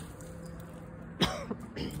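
A person coughing: one sharp, loud cough a little past a second in, followed by a smaller one.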